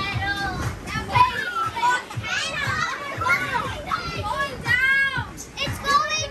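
Several children shouting and shrieking as they bounce in an inflatable bounce house, with repeated dull thuds from their jumping on the air-filled floor.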